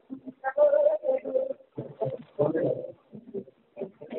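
A caller's voice over a bad telephone line, muddled and garbled so that no words can be made out. It comes in short stop-start spells with gaps between.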